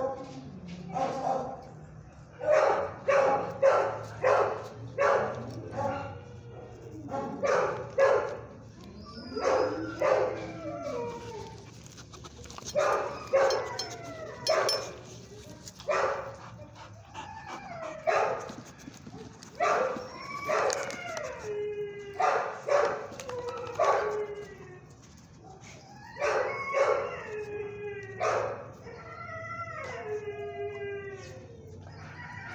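Dogs barking over and over in quick clusters, mixed with a few longer calls that fall in pitch.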